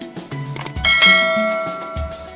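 Background music with a bass line and percussion. About a second in, a bright bell-like ding from a notification-bell sound effect rings out and fades slowly.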